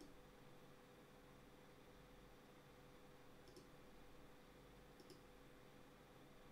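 Near silence with three faint clicks of a computer mouse: one at the start, one about three and a half seconds in and one about five seconds in.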